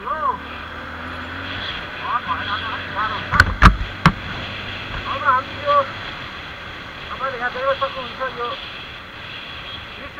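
Motorcycle engine running steadily, a low hum that drops away about six seconds in, with three sharp knocks in quick succession around three and a half to four seconds in.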